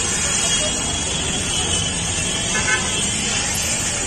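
Street noise of traffic and people's voices, with a short vehicle horn toot about two and a half seconds in.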